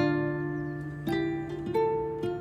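Background music of gently plucked strings: three notes or chords struck about a second apart, each ringing on and fading.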